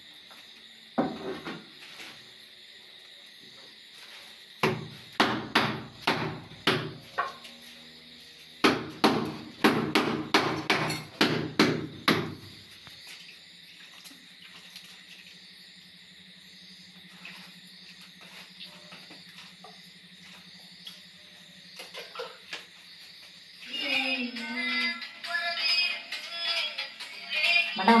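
Repeated dull knocks on a stone countertop slab, a single knock about a second in and then two quick runs of knocks, the longer one near the middle. A faint steady hum follows, then music with a voice near the end.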